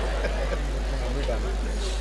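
Steady low hum from the stage sound system, with a faint murmur of the audience in the hall.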